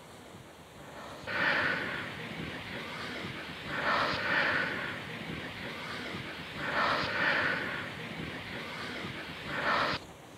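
A person breathing out heavily close to the microphone, four long breaths about three seconds apart.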